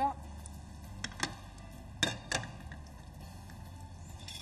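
Frying pan handled on a gas hob's metal grate: three sharp knocks, about a second in and twice around two seconds in, the middle one the loudest.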